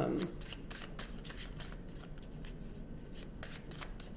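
A deck of cards being handled and shuffled by hand: quiet, irregular clicks and rustling, after the last word of a sentence trails off at the start.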